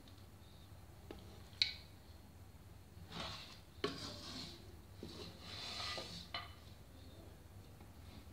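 A metal spoon clinking and scraping against a metal pot as mutton masala is spooned onto the rice layer for dum biryani. A sharp clink about one and a half seconds in is the loudest, followed by a few more clinks and scraping from about three to six and a half seconds in.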